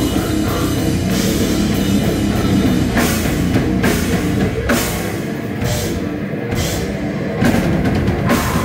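A brutal death metal band playing live: drum kit and cymbals with heavily distorted guitar and bass, dense and loud. The bottom end thins out for a couple of seconds past the middle, and the full band crashes back in just before the end.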